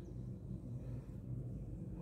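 Faint steady low hum of room tone, with no distinct sound event.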